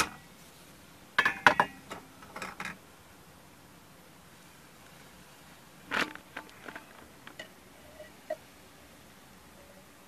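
Cookware handling: a saucepan's lid lifted off and set down with a short clatter of knocks about a second in, then a bump about six seconds in and a few scattered small clicks.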